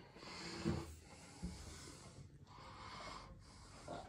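Faint breathing close to the microphone, coming in pulses about a second long, with a soft thump about a second and a half in.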